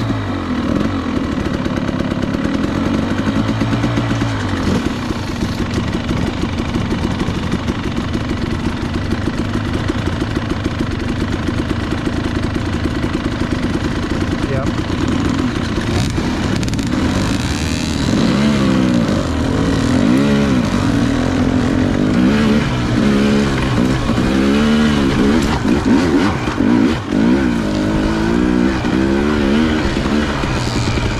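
KTM two-stroke dirt bike engine running at idle, just after it has started. From about 18 seconds in, the revs rise and fall again and again as the throttle is blipped and the bike moves off.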